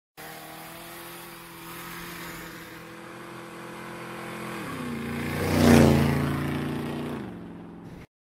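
Motorcycle engine running steadily, dropping in pitch about halfway through, then swelling to a loud pass-by about six seconds in and fading before it cuts off suddenly.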